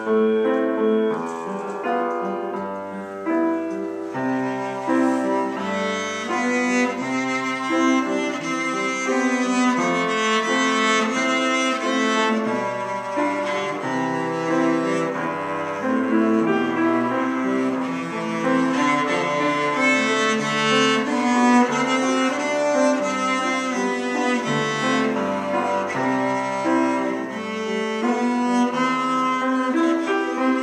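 Cello bowed in a melody of held notes over piano accompaniment.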